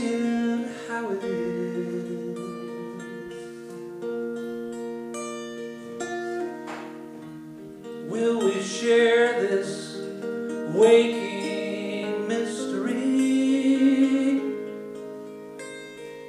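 A man singing a slow song to his own picked acoustic guitar. Held guitar notes ring throughout, and the voice comes in with louder phrases in the second half.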